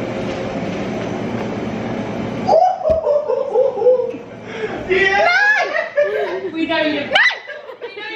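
A steady rushing noise that cuts off abruptly about two and a half seconds in, followed by women giggling and laughing in short bursts.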